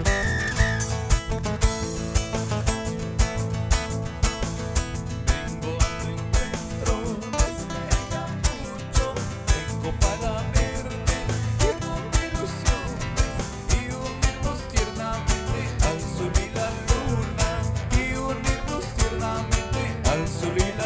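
Live Andean carnaval music from a small band: two amplified nylon-string guitars and an electric bass playing over a steady beat.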